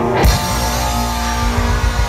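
Live punk rock band kicking into a song: a loud strike on the first beat a moment in, then distorted electric guitar chords ringing over bass and drums.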